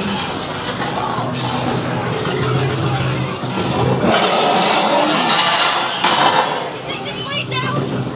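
Loud haunted-maze soundtrack: a steady low droning music bed under unintelligible voices and sudden bursts of noisy sound effects, strongest from about four to six and a half seconds in.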